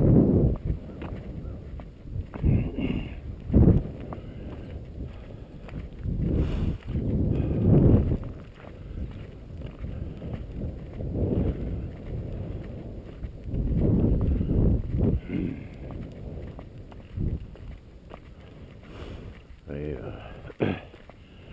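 Wind buffeting a body-worn microphone in irregular low rumbling gusts, with footsteps on a gravel road underneath.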